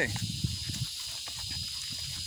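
A horse walking on grassy ground beneath the rider, with soft, irregular hoof thuds, over a steady high hiss.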